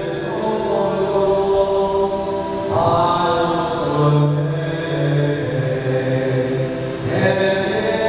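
Voices singing a slow liturgical hymn in long held notes, moving to a new phrase about three seconds in and again near the end.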